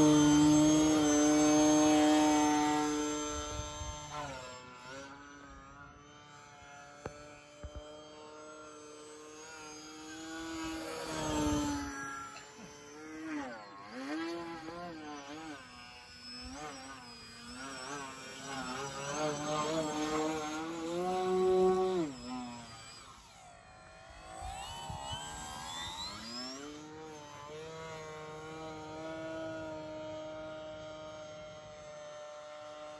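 Electric motor and propeller of a Flex Innovations Yak 55 RC aerobatic plane on a 6S battery, whining loudly as it hovers nose-up near the ground. The whine then fades as the plane flies off, its pitch swooping up and down with throttle changes and passes, swelling twice more and dipping briefly before rising again near the end.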